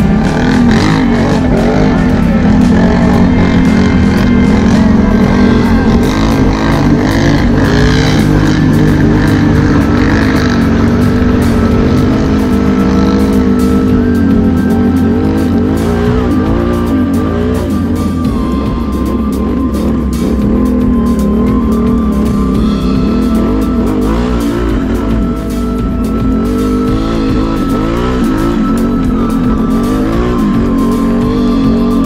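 ATV engine running under throttle, its pitch rising and falling as the revs change.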